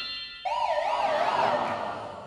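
Game-show hotspot sound effect: an electronic siren-like tone warbling up and down about three times a second, starting about half a second in and fading out toward the end. It signals that the contestant has struck a hotspot and loses the prize she was holding.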